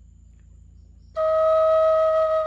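After about a second of faint low hum, a wooden Native American-style flute begins one long, steady held note.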